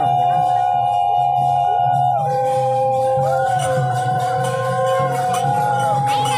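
Several conch shells (shankha) blown together in long overlapping notes, each note bending in pitch as it starts and ends.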